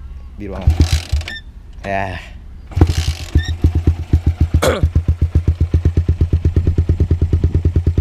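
Suzuki Satria F150's 150 cc single-cylinder four-stroke engine breathing through a LeoVince GP Corsa carbon full-system exhaust, kick-started: it fires briefly about half a second in, catches about three seconds in, then settles into a steady, even idle. The exhaust note is bassy with a slight rasp, which the owner puts down to the short silencer baffle.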